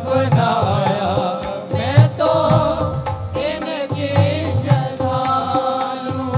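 Live Hindu devotional bhajan music: a quick, steady percussion beat under a sustained melody.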